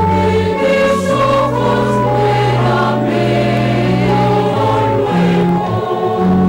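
Choir singing a slow Communion hymn in held chords that change every second or so.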